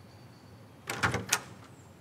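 A door being opened about a second in: a short cluster of sharp clicks and knocks from the handle and latch.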